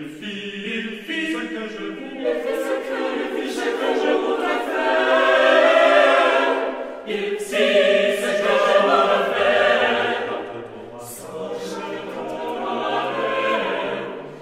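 A choir singing unaccompanied, several voices in harmony, swelling louder towards the middle and easing off near the end.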